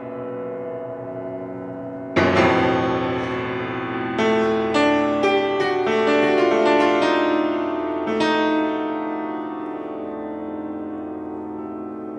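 Petrof grand piano played solo: a held chord fades, then a loud chord is struck about two seconds in, followed by a series of struck chords. Another chord about eight seconds in is left to ring and die away under lighter notes.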